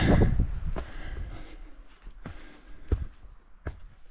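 Footsteps of a hiker walking up a rocky dirt trail: a few separate steps, one louder than the rest about three-quarters of the way through.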